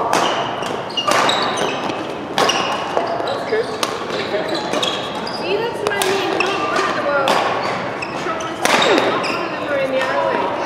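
Badminton rally: rackets striking the shuttlecock in about seven sharp cracks, roughly one every second or so, with shoes squeaking on the court floor between the shots.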